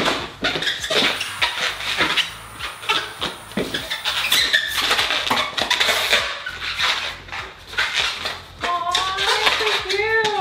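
Latex twisting balloons squeaking and rubbing as they are twisted into a balloon dog, with a squeal near the end that rises and then drops in pitch.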